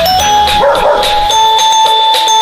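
Background music with steady held notes, and a single dog bark dropped in over it about half a second in.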